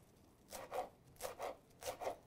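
Kitchen knife chopping fresh parsley on a wooden cutting board: about five faint, quick cuts.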